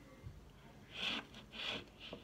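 Two short breathy sounds from a person close to the microphone, about half a second apart, with no words.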